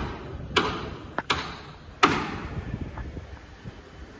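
Hammering during construction work: a sharp bang, then a quick double knock, then the loudest bang about two seconds in, each followed by an echo.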